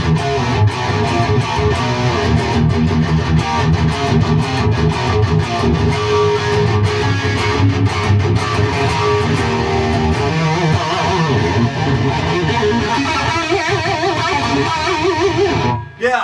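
Les Paul-style electric guitar with Iron Gear Blues Engine humbuckers played through an amp with the gain turned up full: continuous fast riffing and lead lines. Bent, wavering notes come in during the second half, and the playing stops just before the end.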